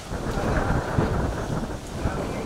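Wind buffeting the microphone: a continuous low rumble of noise that covers the sound.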